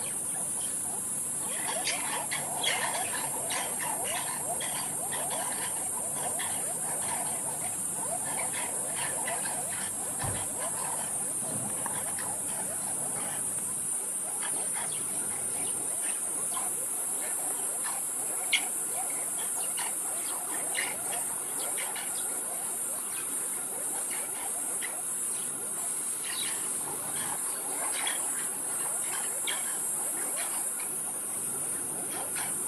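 Steady high-pitched chorus of night insects such as crickets, with many short chirps and clicks from a pack of banded mongooses over it, busiest in the first few seconds. A single sharp knock sounds a little past the middle.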